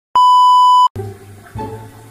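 Test-tone beep of a TV colour-bars transition: one loud, steady, high beep lasting under a second that cuts off abruptly. Background music starts about a second in.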